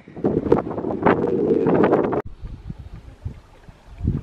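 Wind buffeting the camera microphone in loud gusts, which cut off abruptly about halfway through, leaving a much fainter low wind rumble.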